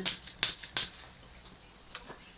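Two quick spritzes from a Lush Fun Times body spray bottle: short hisses about a third of a second apart, about half a second in.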